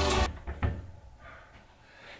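Background music cuts off in the first moment, then a bedroom door's latch clicks once and the door is pushed open.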